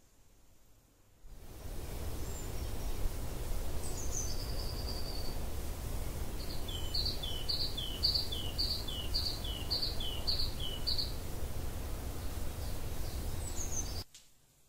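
A bird singing over steady low background rumble: one falling whistle, then a two-note call repeated about ten times at roughly two per second, and a last short falling note near the end.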